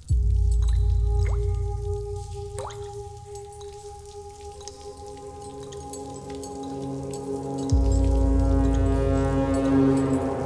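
Tense film score: a deep low boom at the start and again near the end, under sustained held tones that build and thicken. Two short rising drip-like plinks sound about a second and a half and nearly three seconds in.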